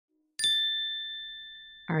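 A single bell-like ding, struck about half a second in: a clear high chime with two ringing tones that slowly fades out.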